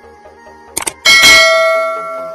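Subscribe-button sound effect: a quick double click, then a bright bell ding that rings out and slowly fades.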